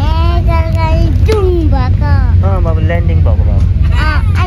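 A young child's high voice, sing-song with sliding pitch, over the steady low rumble of an airliner cabin.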